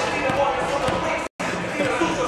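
A man laughing in a large sports hall, with the thuds of basketballs bouncing on the court in the background. The sound cuts out completely for a moment partway through.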